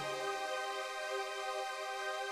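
Background music: a held chord of several steady tones with no bass underneath.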